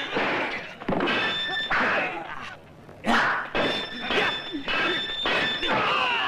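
Dubbed fight-scene sound effects: several sword clashes, each a sharp hit followed by a brief metallic ring, with fighters' shouts and cries between them.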